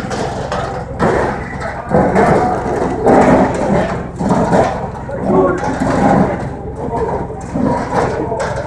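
Several people's voices talking over one another, not picked out as clear words, over a steady low hum.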